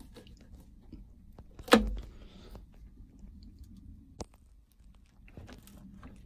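A plastic one-handed ratcheting quick clamp being worked by hand onto a piece of timber: scattered light clicks, a sharp knock with a dull thump under it a little under two seconds in, and one more sharp click a little after four seconds.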